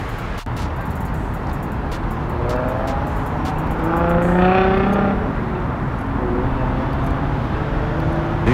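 Street traffic with a vehicle accelerating past, its engine pitch rising from about two and a half seconds in and loudest around four to five seconds in.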